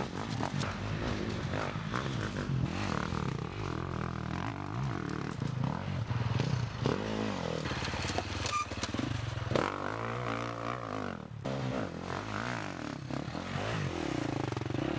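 Husqvarna FE350 enduro dirt bike's 350 cc single-cylinder four-stroke engine being ridden hard, revving up and falling back again and again as the throttle is worked over rough terrain. The engine sound breaks off briefly a little after the middle.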